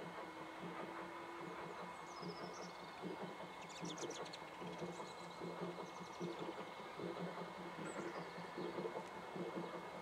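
Saddle-tank steam locomotive working, heard at a distance as a soft, uneven run of exhaust beats that grows a little louder toward the end. A few bird chirps sound over it.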